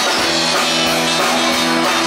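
Live band music: acoustic guitar and drum kit playing together, with sustained notes ringing over a regular drumbeat.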